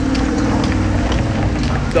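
Street noise with a vehicle engine running nearby, a steady low hum.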